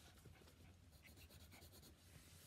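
Near silence: room tone with faint small scratches and ticks of handling.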